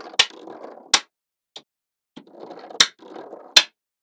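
Small magnetic balls clicking as a strip of them snaps onto a block of the same balls: four sharp clicks, with a soft rattle of balls shifting and rolling between them.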